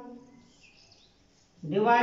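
A man's long drawn-out vowel trails off, then a short pause with a few faint high chirps, and his drawn-out voice starts again near the end.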